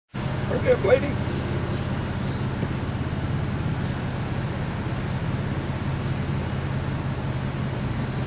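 Steady low hum of a car's engine and road noise heard from inside the cabin, with one short spoken word about a second in.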